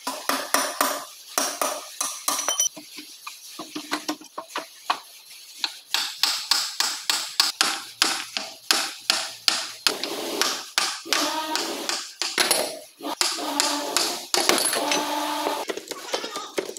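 Repeated sharp metal knocks and taps of hand tools on a loader gearbox's cast case and gears, two to three a second, some of the later strikes ringing.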